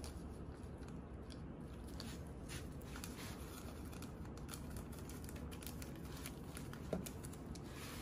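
Faint steady room noise with scattered small clicks and crinkles from hands handling the dye above the tank.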